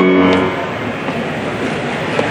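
A grand piano's last notes die away in the first half second, leaving the steady ambient noise of a busy airport concourse.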